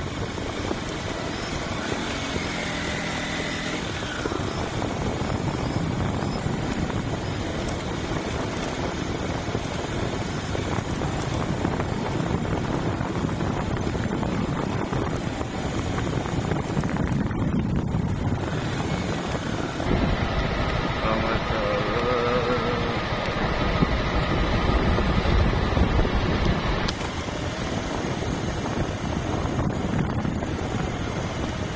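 Steady wind rushing over the microphone with the running of a small motorcycle engine underneath, as the bike rides along a narrow road.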